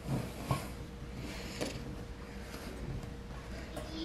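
Wooden spoon stirring stiff, still slightly sticky bread dough in a ceramic mixing bowl, with soft scrapes and a light knock against the bowl about once a second.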